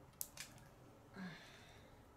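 Two sharp clicks about a fifth of a second apart, a felt-tip marker being uncapped, then a brief faint vocal sound a little past a second in, over quiet room tone.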